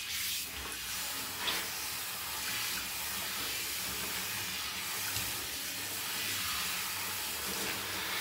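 Water spraying steadily from a handheld shower head onto hair, rinsing out shampoo: an even hiss.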